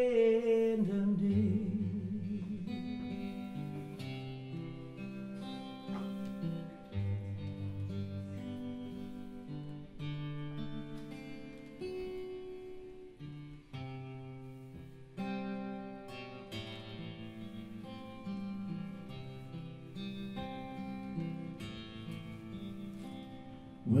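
Live acoustic guitar playing picked notes in a slow instrumental passage, with sustained low bass notes underneath, gradually getting quieter. A held sung note fades out just at the start.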